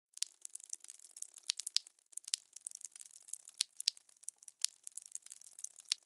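Liquid pouring and splashing, heard as a faint, irregular crackle of many small sharp clicks and pops.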